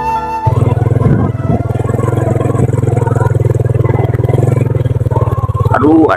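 Sundanese suling flute music cuts off about half a second in, giving way to a small engine running steadily with a fast, even pulse.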